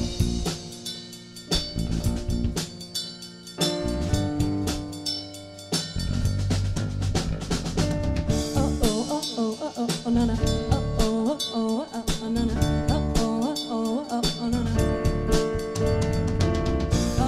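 A live band playing: drum kit, electric bass and keyboard. Stop-start hits with brief drop-outs fill the first six seconds, then a steady groove.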